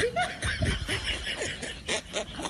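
A person snickering and chuckling in a run of short bursts.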